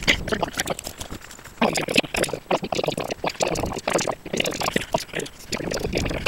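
Irregular crunching and rustling of footsteps and movement over debris and brush, a dense run of crackles and scuffs.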